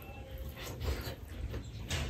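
Close-up wet eating sounds: a handful of rice and pork curry pushed into the mouth by hand, then chewing and lip-smacking in a run of short moist clicks.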